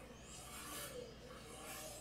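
Faint rubbing of a wet paintbrush stroked across watercolour paper, swelling slightly twice.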